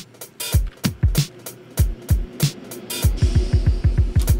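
Programmed electronic drum beat from Reason's Drum Sequencer: deep kicks, snare and hi-hat samples looping. Near the end the kicks repeat in a quick stutter as the stutter control shortens the loop point.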